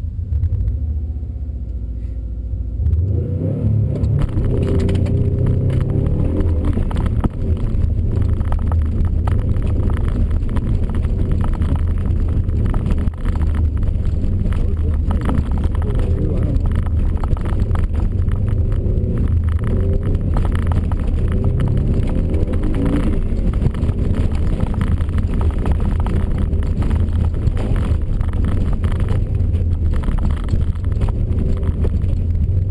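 Subaru Impreza WRX STI's turbocharged flat-four engine heard from inside the cabin: idling for the first few seconds, then pulling away hard about three seconds in and running at high revs, the pitch rising and falling with the gear changes.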